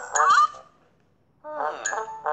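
Cartoon sound effects from an animated children's story app: a short honking sound with bending pitch, a gap of near silence, then more pitch-bending sounds near the end.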